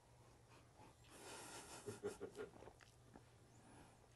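Near silence with faint sounds of two men sipping beer from glasses, a soft exhale about a second in and small gulping sounds shortly after.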